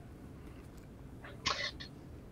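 Low background noise on a video-call line, with one brief, faint vocal sound from a woman about one and a half seconds in, just before she starts to answer.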